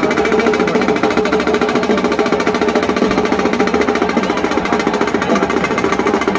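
Drums beaten in a fast, continuous roll, a dense, steady stream of rapid strokes over music.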